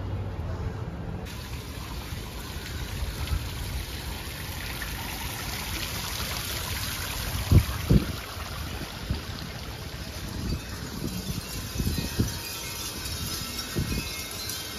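Wind chimes hanging in a tree tinkling faintly over a steady rushing background, with two thumps a little past halfway.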